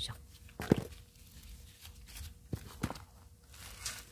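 Repotting handling noise: metal tweezers and gloved fingers working a succulent's roots in gritty potting soil, giving light rustles, scrapes and a few sharp clicks.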